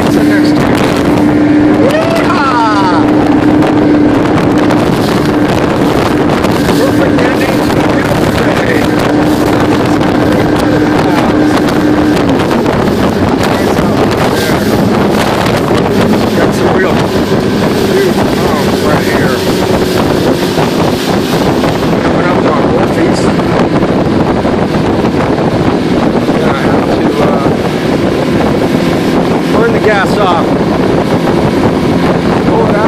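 Motorboat engine running under way, with wind on the microphone and water rushing past the hull; about twelve seconds in, the engine note drops lower and holds there.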